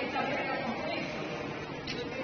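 Indistinct voices over a steady background din, with a short click near the end.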